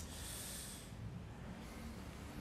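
A man drawing a breath close to the microphone: a small mouth click, then a soft intake of air lasting under a second.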